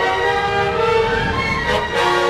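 Full symphony orchestra playing sustained chords, with a low rumble swelling underneath about midway and fading near the end.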